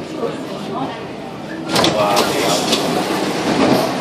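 Passenger voices and general bustle inside a metro car standing at a station with its doors open, over the car's steady running hum. The noise grows louder about two seconds in.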